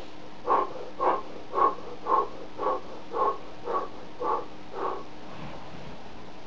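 A man's short, forceful breaths while doing belly pumps, nine in a row at about two a second, growing fainter toward the end.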